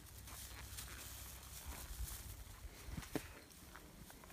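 Faint footsteps and rustling through wet grass and undergrowth, over a low rumble, with one sharper short sound about three seconds in.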